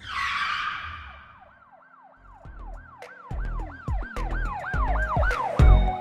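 Electronic logo sting: a whoosh and hit that fades out. Then a run of siren-like pitch swoops, about three a second, over bass thumps that build up, ending in a heavy hit.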